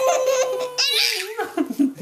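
A six-month-old baby laughing: one long, steady high note, with a short burst of laughter less than a second in.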